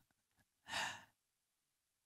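A man's single short breath, picked up close on a handheld microphone, about a second in; otherwise near silence.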